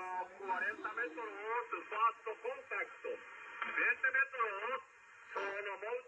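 A voice received over 20-metre single-sideband from an HF transceiver's speaker. It sounds thin and telephone-like over faint band hiss, with a short pause near the end.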